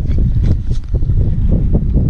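Heavy wind buffeting the microphone, a loud irregular low rumble, with a vehicle running beneath it.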